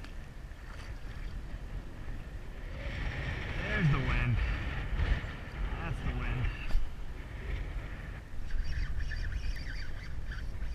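Wind buffeting the microphone on a kayak in choppy water, a steady low rumble. A man's voice is heard briefly in the middle, without clear words.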